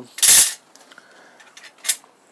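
Flat steel knife blanks clattering against one another as they are handled and set down: one loud clatter just after the start and a brief clink near the end.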